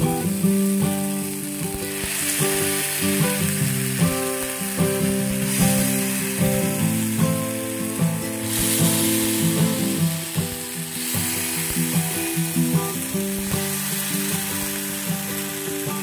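Appe batter sizzling as it is spooned into the hot, oiled cups of an appe pan, the hiss swelling and fading in stretches. A melodic background music track plays underneath.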